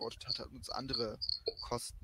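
Faint speech with a thin, high-pitched whine that keeps cutting in and out.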